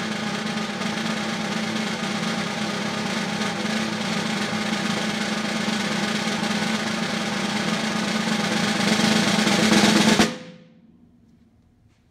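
Pearl Philharmonic concert snare drum played as a sustained roll of about ten seconds. It grows gradually louder, swelling most near the end, then cuts off sharply about ten seconds in with a brief ring.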